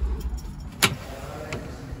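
Aluminium-framed glass door being opened: one sharp clack about a second in, then a smaller click about half a second later, over a low rumble at the start.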